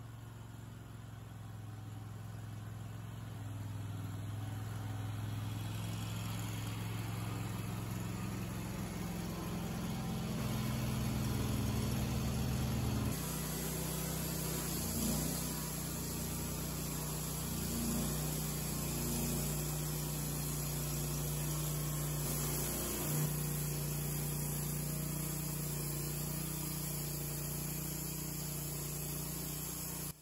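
Wood-Mizer LT30 hydraulic band sawmill's engine running with a steady drone as the saw head travels down a red oak cant, its band blade making a shallow clean-up cut. The sound grows louder over the first dozen seconds and the engine note shifts about 13 seconds in.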